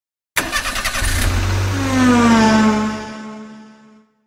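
Intro sound effect of a car engine starting: a rough rapid stutter for about a second, then a steady low running note, with a pitched tone that slides slightly down and fades out near the end.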